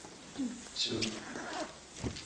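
A man's voice through a microphone: one short spoken word, "Все" ("that's all"), with brief pauses around it.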